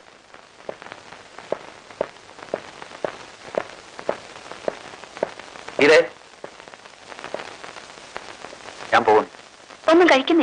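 Footsteps on stairs and a hard floor, a steady walk of about two steps a second. A brief voice sound comes about six seconds in, and another near the end.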